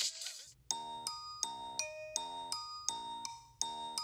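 Music breaks off at the start. After a brief pause, a light bell-like chime tune begins about a second in, with evenly spaced notes at roughly three a second.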